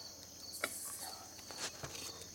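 Evening insect chorus: a steady, high-pitched, unbroken chirring, with two light clicks of utensils on plates about half a second and a second and a half in.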